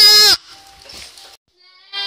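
A young girl's loud, wavering sung note at close range, cut off abruptly about a third of a second in, leaving only low background sound.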